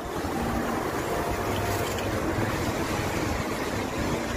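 A taxi driving past on a wet road, its tyres hissing on the wet asphalt with a steady swish.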